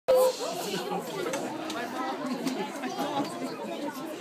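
Chatter of many overlapping voices in a large room, opening with one short, loud voice.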